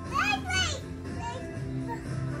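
A young child's high-pitched voice, one short burst of babbling in the first second, over background music that plays throughout.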